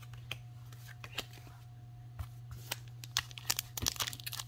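Trading cards and a foil booster pack being handled by hand: scattered light clicks and rustles that get busier near the end as the pack is picked up, over a steady low hum.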